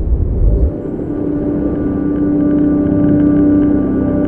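Logo-intro sound effect: a deep rumbling whoosh that cuts off under a second in, followed by a sustained electronic chord that grows slightly louder and holds.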